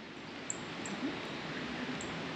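Steady outdoor background hiss, with two faint, short high ticks in the first second.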